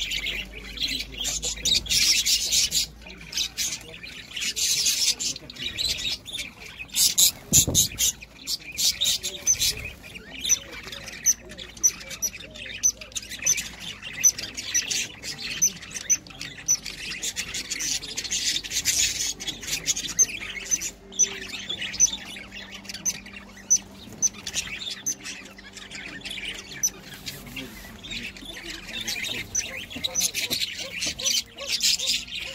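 A flock of budgerigars chattering in an aviary: continuous rapid chirps and squawks that swell louder in stretches.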